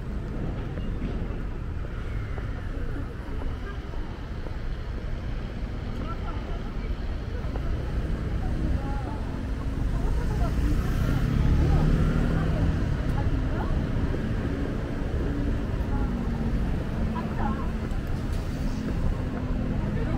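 City street ambience: a steady traffic rumble that swells about halfway through, with snatches of people's voices.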